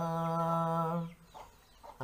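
A man singing unaccompanied, holding one steady note for about a second, then breaking off into a short quiet pause.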